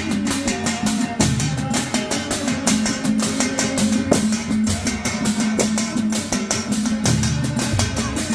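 A group of hand-held frame drums beaten together in a fast, steady rhythm, many skins struck at once.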